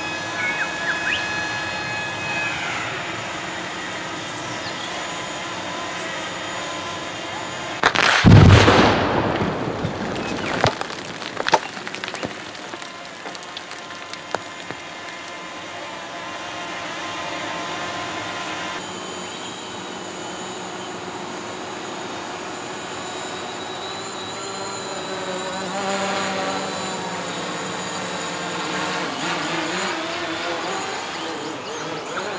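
A covered multi-hole rock blast fires about eight seconds in: one sudden deep boom, by far the loudest sound, trailing off in a rumble. A few sharp cracks follow over the next three seconds.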